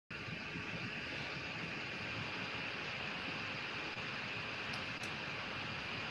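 Steady background hiss from open microphones on a video call, with two faint clicks about five seconds in.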